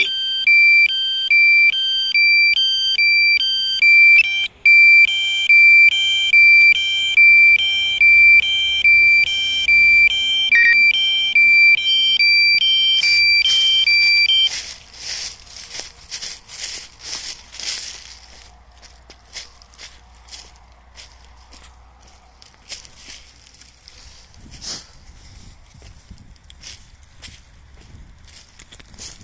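DJI drone app's critically low battery alarm: a steady high tone with a higher beep about once a second, sounding while the drone is forced down on a drained battery. It cuts off about fourteen seconds in, followed by a few seconds of crackling clicks and then faint scattered clicks.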